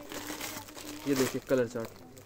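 Clear plastic packaging on boxed suits crinkling as the packets are handled and set down, with a person talking briefly about halfway through.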